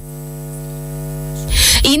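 A steady electronic hum: one buzzing tone with many even overtones, swelling slightly over about a second and a half, then cut off as speech resumes.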